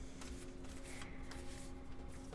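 A deck of new, stiff, round oracle cards being shuffled and handled by hand: a faint papery rustle with soft clicks of card on card.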